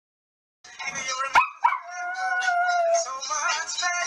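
Short outro sound sting: two sharp hits about a second in, then a held tone lasting over a second over a busy backdrop, cutting off abruptly at the end.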